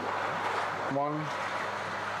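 Steady rush of churning water in a koi pond's moving bed filter, with a faint low hum under it. A man's voice makes a brief sound about a second in.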